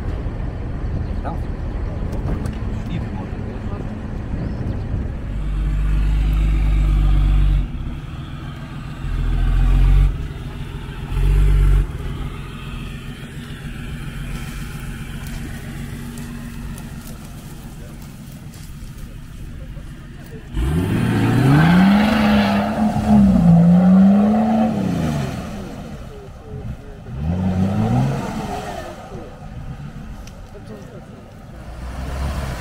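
4x4 engine drone while driving along a rough dirt track, with a few heavy low thuds in the first half. Later an off-road 4x4 stuck in deep mud has its engine revved up and down in two surges, a longer one and then a short one near the end, as it tries to pull free.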